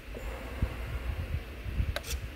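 Small electric ballast pump in a model submarine's watertight cylinder running faintly and steadily, reversed to vent the ballast tank, over low handling rumble.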